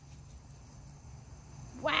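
Quiet outdoor ambience: a faint steady high-pitched insect drone of crickets over a low wind rumble, with a woman's "wow" just at the end.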